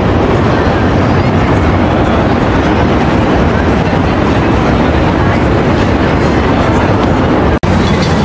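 A steady, loud rumble of a passing train. The sound drops out for an instant near the end.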